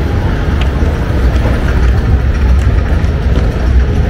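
A loud, steady low rumble with a hiss over it.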